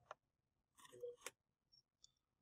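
Near silence, with a faint click at the start and a short burst of faint clicks and rustling about a second in.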